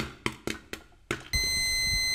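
Sound design for an animated channel logo: a quick run of sharp hits, then a steady, high electronic beep-like tone held over a low rumble from about a second and a half in.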